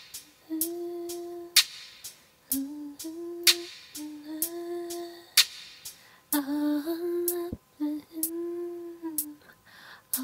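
A woman humming an R&B melody in held, gently sliding phrases, punctuated by sharp percussive clicks every second or two.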